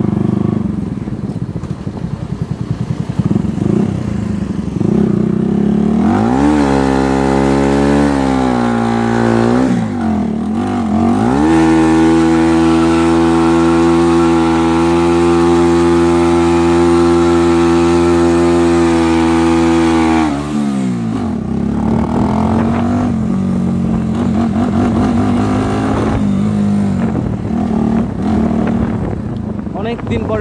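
Bajaj Pulsar NS160's single-cylinder engine running as the bike is ridden. It revs up about six seconds in, eases off briefly, then climbs again and holds a steady high pitch for about eight seconds. Near twenty seconds in it drops back to a lower, uneven note.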